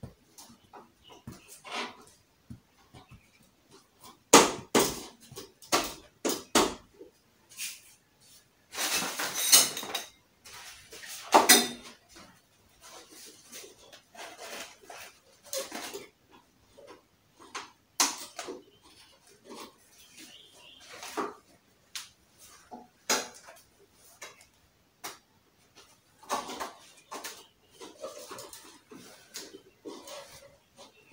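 Portable wardrobe frame being assembled by hand: tubes and plastic connectors knock and click irregularly as they are fitted and handled. A longer scraping rustle comes around nine seconds in.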